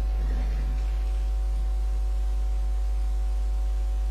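Steady low electrical mains hum picked up by the recording setup, with several fainter steady tones above it.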